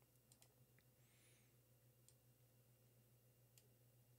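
Near silence with a few faint, short computer mouse clicks, two close together near the start and one more near the end.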